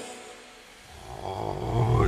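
A sung music track fades out at the start, followed by a brief lull. Then a low rumble swells up steadily, leading into a dramatic film clip's soundtrack.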